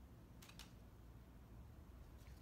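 Near silence: room tone, with two faint soft taps about half a second in, a makeup brush picking up eyeshadow from a pressed powder palette.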